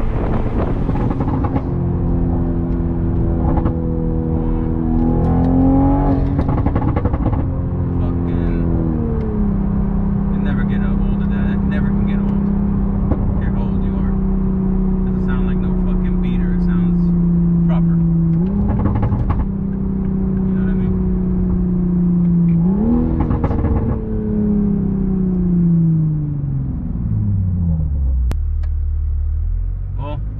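Mk5 Toyota Supra engine heard from inside the cabin while driving: a steady drone whose pitch changes in steps with the revs. It jumps up sharply twice in the second half, then falls away smoothly near the end as the revs drop, over a low road rumble.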